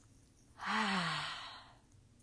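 A woman breathing out in a long sigh, with a little voice in it that falls in pitch. It starts about half a second in and lasts about a second.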